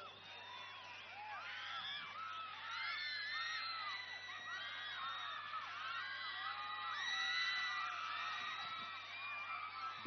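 A large rally crowd cheering, with many overlapping whoops and shouts. It grows louder after about two seconds and stays up through the rest.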